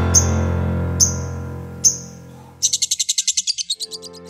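The tail of a title-theme jingle: a sustained keyboard chord fading away under three short, bright, high accents about a second apart. For the last second and a half a rapid, high-pitched chirping trill of about ten pulses a second takes over, bird-like.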